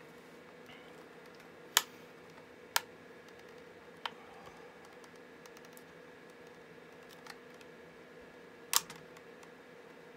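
Sharp clicks and snaps of a plastic battery case as a flat-head screwdriver pries along its seam, about five of them, unevenly spaced. The loudest comes about two seconds in, and a double click comes near the end. A faint steady hum runs underneath.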